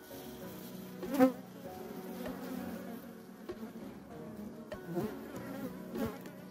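Honeybees buzzing steadily on an open hive, a low even hum, with one brief louder swell about a second in.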